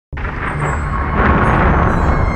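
Opening of an intro soundtrack: a noisy whoosh that swells over a deep bass rumble, starting abruptly a moment in.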